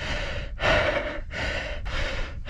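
A mountain biker's hard, heavy breathing, one deep breath about every two-thirds of a second: out of breath from pedalling up a steep climb.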